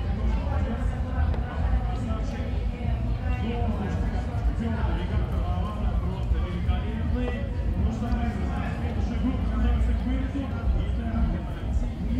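Background chatter of several voices over a steady low rumble, with a few faint clicks of wooden chess pieces being set down on the board.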